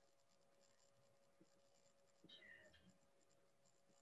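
Near silence: faint room tone with a steady faint hum, and one brief faint sound a little past halfway.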